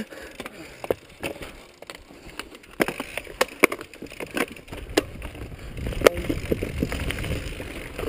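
Mountain bike rattling over a rough dirt trail, with many sharp clicks and clunks from the frame, chain and suspension. From about halfway a steady low rumble of tyres and wind on the microphone grows under the knocks.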